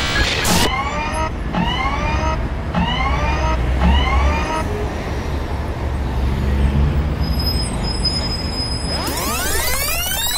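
Electronic intro of a breakbeat cover: a steady low synth bass drone under four short rising synth tones about a second apart, then a synth sweep of rising and falling tones near the end.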